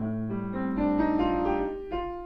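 Grand piano playing a C-minor teaching piece: a low chord struck at the start, then a line of single notes climbing step by step over it, and a new chord struck near the end.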